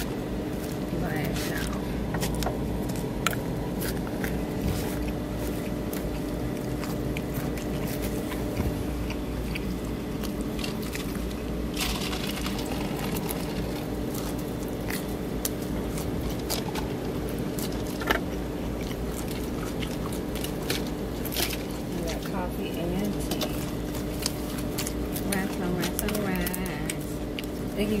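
Steady outdoor background: a constant hum with indistinct voices of people talking. Occasional sharp clicks from a plastic fork against a clear plastic salad bowl.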